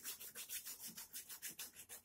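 Yellow chalk rubbed back and forth on a blackboard in quick, even strokes, about six or seven a second, shading in a filled area. The scratching is faint.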